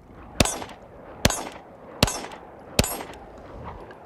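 Four 9mm pistol shots from a Glock 17 Gen5 MOS, fired at a steady pace of about one every 0.8 seconds, each a sharp crack with a short echo trailing after.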